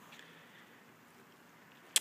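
Quiet room tone with nothing distinct, then a single short, sharp click near the end.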